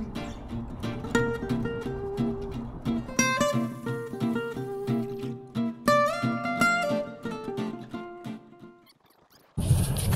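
Background music: a plucked acoustic-guitar melody that fades out near the end. After a brief silence, outdoor noise cuts in just before the end.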